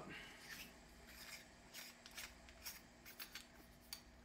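Faint scraping and a scatter of small clicks as the metal grille of a Shure Beta 87 condenser microphone is unscrewed by hand from its body.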